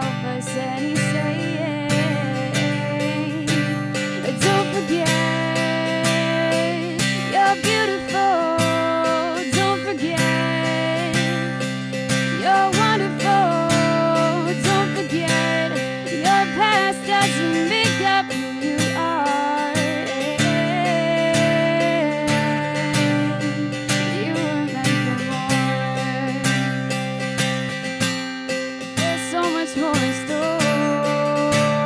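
Acoustic guitar strummed in steady chords, with a woman's voice singing a melody over it: a live solo acoustic song.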